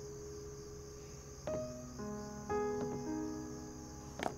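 Crickets chirring steadily in a high, even band, the night ambience of the scene. Soft background music comes in over it about halfway through, with slow held notes.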